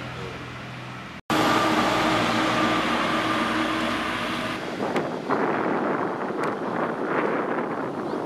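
Outdoor ambience in three edited pieces: a steady machine hum, broken by a sudden cut about a second in; a louder steady mechanical hum with a constant tone, like a vehicle engine running; then, from about halfway, gusty wind buffeting the microphone.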